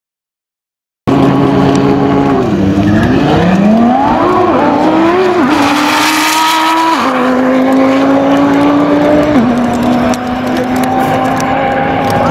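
Twin-turbo Audi R8 5.2 V10 drag car launching hard off the start line: the engine note dips, then climbs steeply in pitch as it accelerates, and drops in two steps at upshifts about seven and nine and a half seconds in. The sound cuts in suddenly about a second in.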